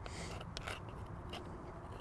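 Faint scraping of a hoof pick cleaning out the sole of a horse's front hoof: a few short, light scratches.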